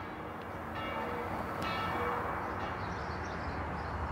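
Church bells ringing in the distance, struck a couple of times with slowly fading tones, over a steady low city rumble.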